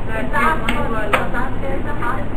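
A person's voice speaking quietly over steady room noise, with two sharp knocks, one under a second in and one just after a second in.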